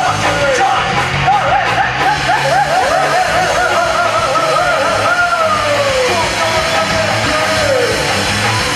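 Live rock band playing loud: drums and bass under a lead line of quick repeated swooping notes, which settles into a long held note that falls away near the end.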